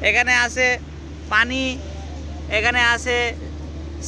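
A person speaking in short phrases over a steady low hum.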